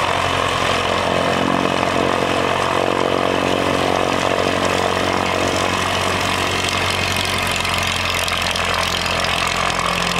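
Cessna 140 light airplane's four-cylinder air-cooled engine and propeller running steadily.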